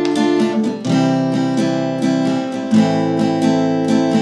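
Cutaway acoustic guitar strummed in a steady down-down-up-up-down-up pattern, changing chord about a second in and again near three seconds: D minor to C major to A minor.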